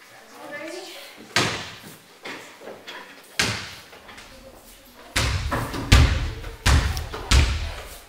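A basketball bouncing on a hollow wooden stage floor: six dull thumps, two spaced bounces and then four louder ones in quick succession in the second half, each with a short boomy ring.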